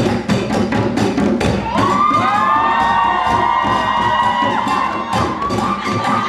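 Hand drums played in a fast, driving rhythm. From about two seconds in, a crowd cheers with shrill, sustained high shouts over the drumming, and another shout comes near the end.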